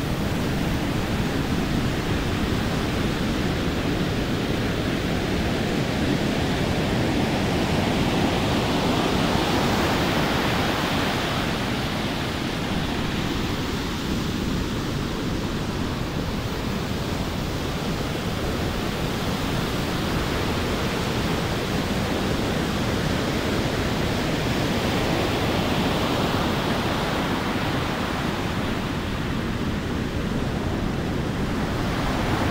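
Heavy ocean surf breaking and washing up a beach: a continuous rush of water that slowly swells and eases as the waves come in.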